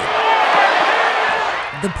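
Crowd cheering, a dense wash of many voices.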